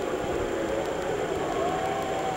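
Steady hiss of background noise on an old camcorder recording, with a faint high whine throughout and a faint held tone coming in near the end.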